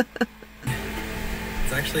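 A woman laughs briefly. Then a steady background hum starts abruptly, and a woman's voice speaks over it near the end.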